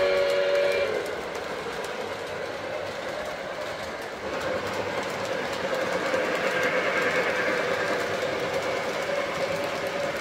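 A Lionel Legacy model steam locomotive's onboard sound system sounds a multi-note steam whistle, which cuts off about a second in. The O gauge train then rolls along the track, its wheels clicking over the rails. It gets louder from about four seconds in as the locomotive and passenger cars pass close by.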